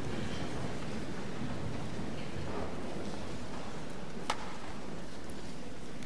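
Large auditorium audience settling: a steady rustling hubbub of shifting people, with one sharp knock a little over four seconds in.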